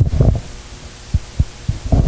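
Handling noise from a handheld microphone being carried and passed from hand to hand: a cluster of dull low thumps in the first half-second, then a few single soft knocks.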